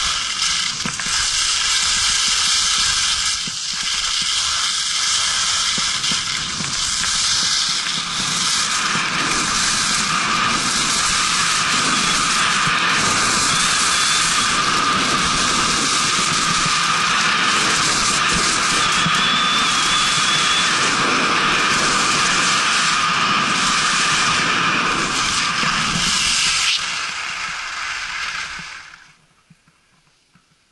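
Skis running and scraping over hard-packed snow at speed, mixed with wind rushing over the microphone as a loud, steady hiss; it fades out near the end.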